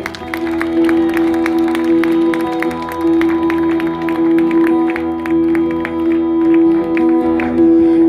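Live band with violin, guitars, bass and drums playing: a long held note runs under a quick, steady ticking rhythm.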